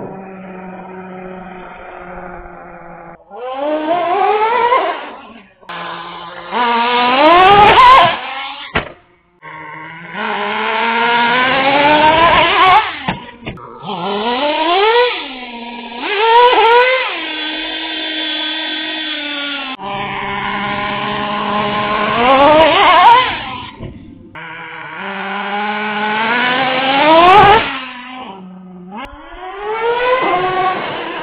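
Traxxas T-Maxx RC truck's small two-stroke nitro engine revving up again and again in rising whines, about six times, dropping back to a steady idle between each burst.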